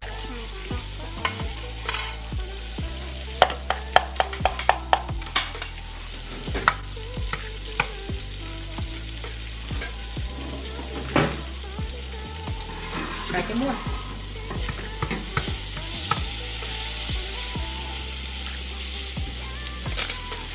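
Food frying in a pan on a gas stove, a steady sizzle, with scattered sharp kitchen clicks and taps and a quick run of them about four seconds in.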